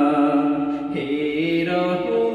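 A young man singing a Bengali Islamic gojol in long held notes; the melody moves to a new note about a second in.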